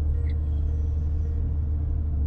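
Diesel engine of a Doosan wheeled excavator running steadily under digging load, heard from inside the cab as a steady low drone.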